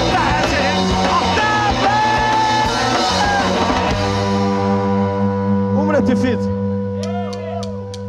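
Punk rock band playing live: electric guitars, bass, drums and sung vocals. About four seconds in, the drums drop out and the guitars and bass hold a ringing chord, with a few short sliding pitch sweeps over it.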